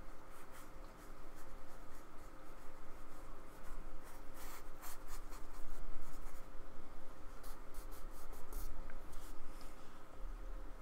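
Flat paintbrush dabbing and scrubbing acrylic paint onto card in a run of short scratchy strokes, which come thickest in the second half.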